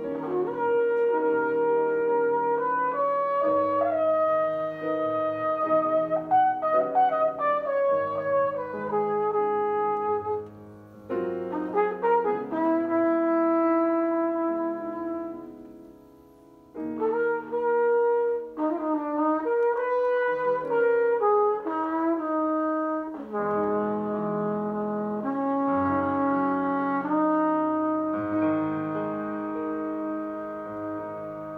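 Flugelhorn playing a jazz melody of held notes in phrases over grand piano chords, with short breaks in the horn line about eleven and sixteen seconds in.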